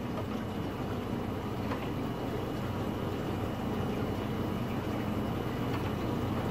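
Steady hum and rush of a reef tank's circulation pumps and moving water, with a faint splash or two from a hand working in the tank.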